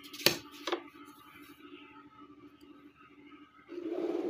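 Plastic drawing instruments being handled on paper: two light clicks within the first second as the set square is set against the ruler, then a short scraping slide near the end.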